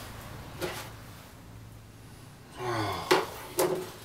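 A man in bed groaning sleepily, with two sharp knocks about three seconds in as a phone is handled on the bedside table.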